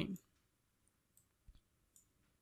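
Three faint, short clicks of a computer mouse in the second half, over near silence.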